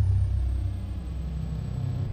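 Deep, steady low rumble of a closing sound effect, with a faint high tone sliding downward at its start.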